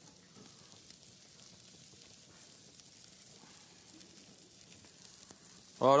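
Wild boar chops sizzling on a hot grill grate: a faint, steady crackling hiss.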